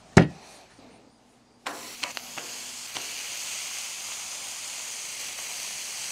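A single sharp knock from the handheld metal burger press just after the start. Then, from a little under two seconds in, raw ground-beef patties sizzling steadily on a Blackstone flat-top griddle turned up high to sear, with a few light clicks early in the sizzle.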